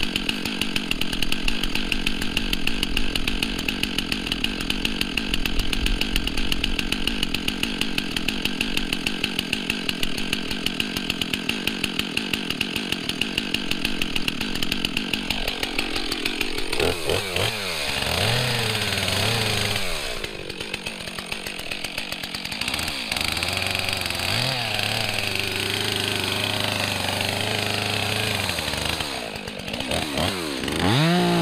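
Two-stroke Stihl chainsaw idling steadily for about the first half, then revved up and down several times from about halfway, rising toward full throttle at the very end as it is brought to the trunk to cut.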